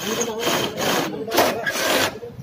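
Cordless drill boring into an aluminium cabinet frame rail, the bit grinding through the metal in about three pushes that swell and ease off.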